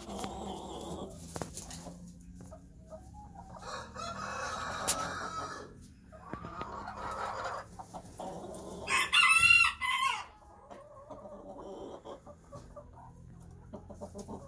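Chickens calling in a coop, with softer calls through the first eight seconds. About nine seconds in, a rooster crows once, loudly, for about a second; it is the loudest sound.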